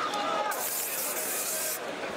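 Voices talking over arena background noise, with a high hiss that starts about half a second in and stops after about a second.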